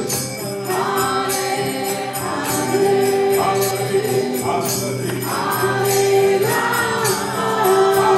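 A group chanting a kirtan, voices in unison over a sustained harmonium drone, with hand cymbals ringing on a steady beat about three strikes a second.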